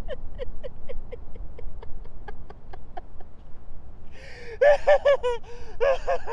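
A man laughing breathlessly in short, rhythmic 'ha' bursts, about four a second, trailing off around three seconds in, then breaking into louder laughter about a second later.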